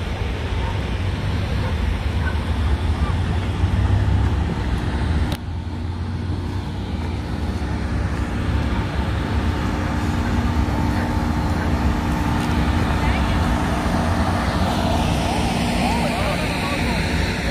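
Outdoor city ambience: a steady rumble of road traffic with people's voices in the background.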